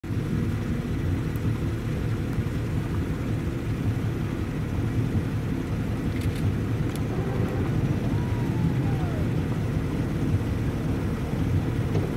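Steady low rumble of a boat's motor running close by, with no change in pitch.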